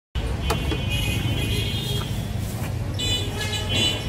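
Busy street traffic rumbling steadily, with high horns sounding from about one to two seconds in, again about three seconds in, and near the end.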